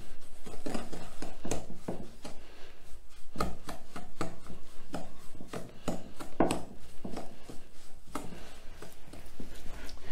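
Wooden spoon creaming butter and sugar by hand in a glass mixing bowl: an irregular run of scraping strokes and light taps, several a second, as the spoon works the mixture against the glass.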